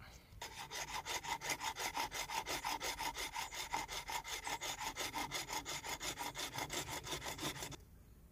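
Homemade mini saw made from a hacksaw blade cutting a thin, shallow kerf around a heather branch, in quick, even short strokes at about six a second while the wood is turned. It starts about half a second in and stops just before the end.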